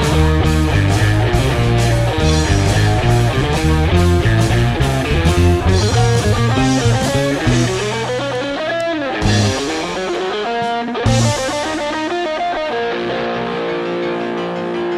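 Electric guitar, a BMG Red Special through a treble booster and AC30-style amp simulation, playing a driving rock part with heavy low end. About eight seconds in it gives way to a run of sliding notes that rise and fall, then settles into softer held notes near the end.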